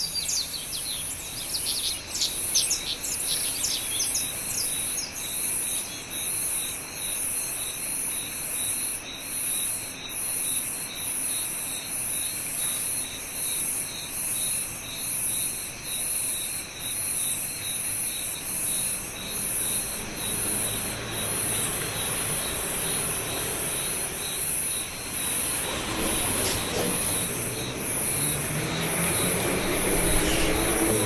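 Chorus of insects trilling in a steady pulse about one and a half times a second, with bird chirps in the first few seconds and a low rumble building near the end.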